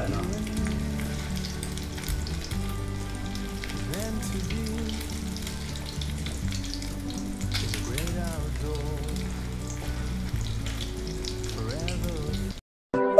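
Slices of beef luncheon meat shallow-frying in hot cooking oil in a pan: a steady sizzle with frequent small crackles, while a spatula moves and turns the slices.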